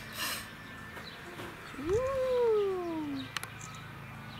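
A toddler's long wordless vocal call, rising quickly in pitch and then sliding slowly down over about a second and a half, followed by a sharp click.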